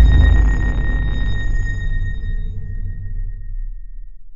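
Sound-effect sting of an outro card: the tail of a deep boom, a low rumble under a thin high ringing tone, dying away over about four seconds.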